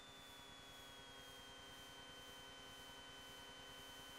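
Near silence: a faint steady hum with a high whine that slowly drops a little in pitch in the first second or two.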